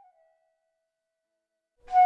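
Background music: a soft held melody fades out, then near silence, then a loud held note with rich overtones begins just before the end.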